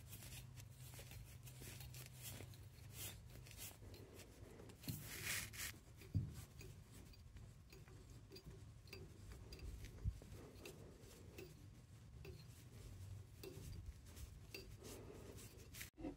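Faint handling sounds as a hand turns the washing machine's water shut-off valve handles on the supply pipes. There is a soft rustle about five seconds in and a couple of light knocks.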